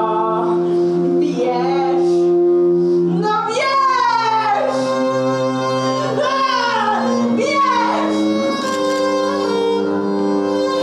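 Violin and cello playing long held notes that shift pitch in steps, with a woman's voice moaning and wailing in long gliding cries from about three seconds in.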